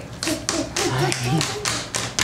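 A quick, even run of hand slaps, about four a second, under people laughing.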